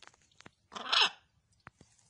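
Blue-and-gold macaw giving one short, harsh call about a second in, with a few faint clicks around it.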